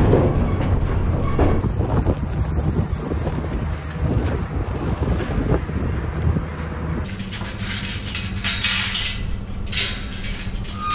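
Wind buffeting and a low road rumble from a pickup towing a livestock trailer. A steady engine hum follows, with a few sharp knocks near the end.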